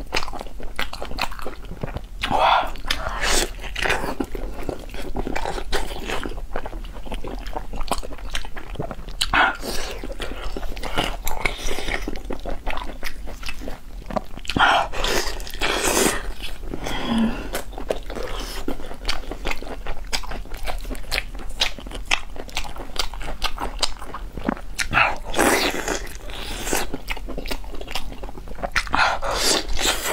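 Close-miked wet biting, chewing and sucking on a stewed beef knuckle with soft, tendon-rich meat, a constant patter of small mouth clicks with a louder sucking or slurping bite every few seconds.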